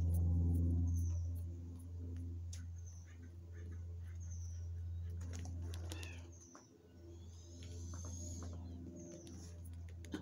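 A few short, high bird chirps over a steady low hum that is loudest in the first second or two and fades briefly about six and a half seconds in.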